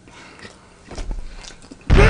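Faint mouth clicks from chewing a spoonful of brown beans. Near the end a sudden loud rushing noise with a falling tone cuts in.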